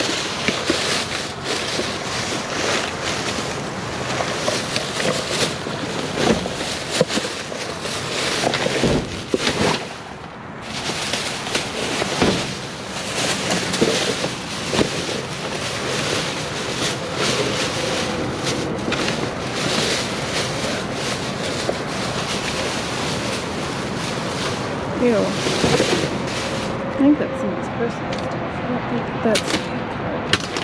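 Plastic trash bags rustling and crinkling as gloved hands pull open and dig through a clear bag of flattened cardboard, with many small crackles and scrapes.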